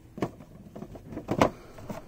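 Clicks and knocks of clear plastic display boxes being handled and set down, several sharp taps with the loudest about one and a half seconds in.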